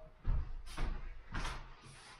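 Footsteps on a wooden floor: about three dull thuds, roughly half a second apart.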